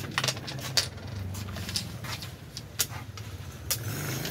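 Wooden xiangqi pieces clacking as they are set down on the board and lifted in quick play, a handful of sharp clicks about a second apart. A steady low hum runs underneath.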